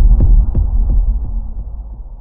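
Deep cinematic boom from a logo-reveal sound effect, starting suddenly. A few sharp crackles sound over the first second, then it fades into a low, steady rumble.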